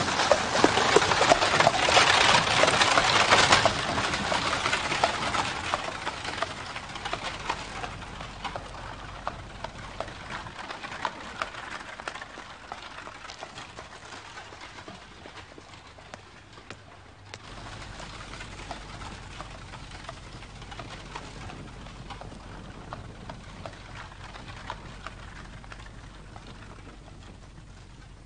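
Horse hooves clip-clopping and carriage wheels crunching on gravel as a horse-drawn carriage drives off, loud at first and then fading away over about fifteen seconds. After that a quieter steady background remains, with a low hum.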